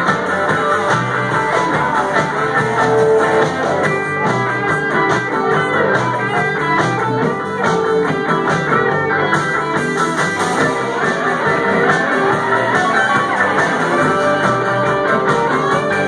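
Live blues band playing an instrumental break with no vocals: electric guitars, bass and drum kit, with a blues harmonica.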